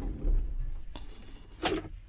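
Camper van's engine being switched off with the key: a low idle fades in the first half-second, a click comes about a second in, and a short sharp sound follows near the end.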